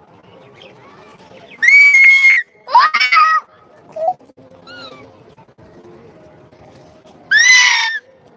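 A child's shrill, high-pitched screams, three of them: two close together in the first half and one near the end, each rising then holding.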